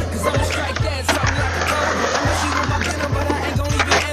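Rap music playing over skateboard wheels rolling on concrete.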